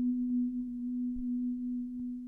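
Marimba holding a single low note as a soft, even roll of closely spaced mallet strokes, with the note slowly fading toward the end.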